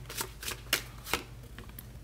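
Tarot cards being handled as a card is drawn from the deck: a handful of short, crisp card snaps and slides at irregular intervals.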